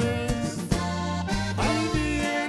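Cantabella Rustica button accordion playing a held norteño melody line over the band's steady bass notes, with no singing.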